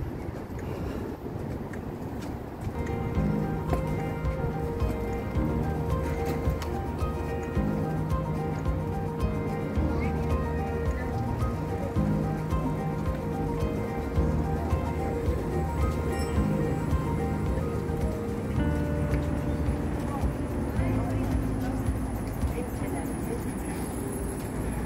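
Music: held, sustained notes and chords that change every second or two, getting louder about three seconds in.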